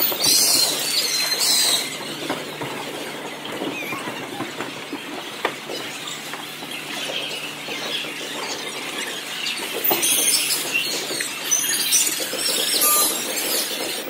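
Sneaker soles squeaking on a gym court floor in short, high-pitched bursts, in the first two seconds and again from about ten to thirteen seconds in, over the steady din of the hall, with a couple of sharp knocks in between.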